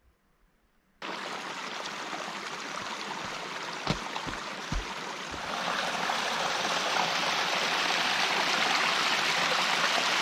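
Small forest brook running and splashing over mossy rocks in little cascades, a steady rush of water that starts about a second in and grows a little louder about halfway through. Two brief low thuds come near the middle.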